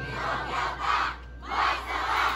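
A group of voices shouting together in unison, two long shouts in a break in the music, typical of a dance troupe's chorused yell.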